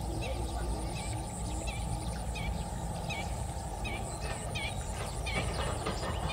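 Birds chirping over and over in short, quick calls, with a faint high trill and a steady low rumble underneath.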